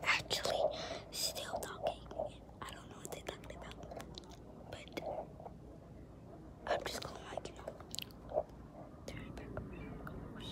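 A girl whispering close to the phone's microphone in short breathy bursts with pauses, with scattered sharp clicks.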